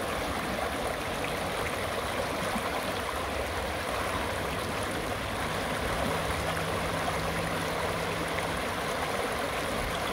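Shallow river rapids: water rushing and splashing over rocks in a steady, unbroken wash.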